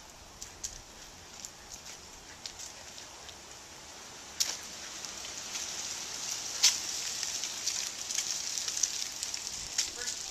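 Footsteps crunching and crackling through dry fallen leaves, growing louder about halfway through, with a few sharp snaps mixed in.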